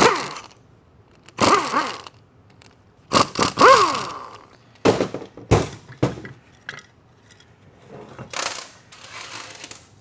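Small power tool whirring in short bursts, spinning up and down, as the bolts holding the two halves of a TH400 transmission's front pump are run out. Metal clinks and clatter come from the bolts and pump parts on the steel bench.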